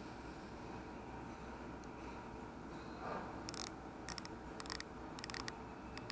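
Mitutoyo 1–2 inch micrometer's thumb ratchet clicking, in a few short bursts of faint clicks in the second half, as the spindle is run closed on the 1-inch setting standard for a final check of the calibration.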